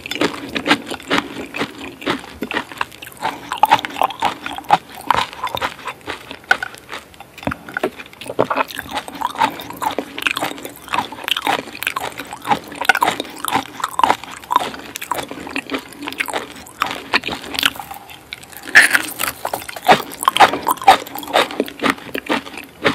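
Close-miked chewing and biting of raw coconut palm weevil larvae dipped in fish sauce: wet, squishy mouth sounds with a dense run of irregular small clicks, a little louder near the end.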